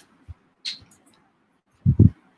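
A pause between a man's spoken sentences, mostly quiet room tone through a call microphone, with a few faint short sounds and a brief low thump near the end.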